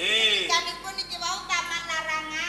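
Speech: actors' spoken stage dialogue.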